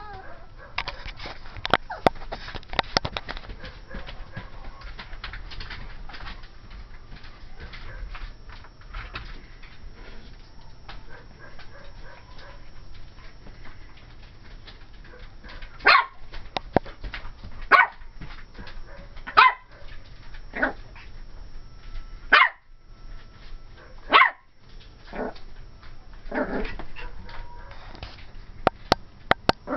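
Pomeranian puppy barking: about eight short, high barks a second or two apart, starting about halfway through. She is alarm-barking at a doll she has noticed.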